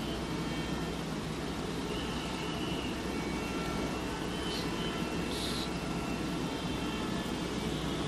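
Steady background hiss with a low hum, with a couple of faint brief sounds about halfway through.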